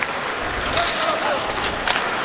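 Hockey arena sound during live play: a steady crowd murmur, with a few sharp clicks and scrapes from sticks, puck and skates on the ice.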